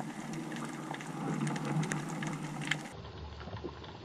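Underwater ambience heard through a camera housing: a steady hiss with many small clicks and crackles scattered through it. About three seconds in the sound changes abruptly to a duller tone with more low rumble.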